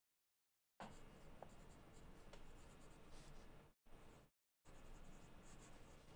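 Faint scratching of a pen writing on paper, in three stretches broken by moments of dead silence.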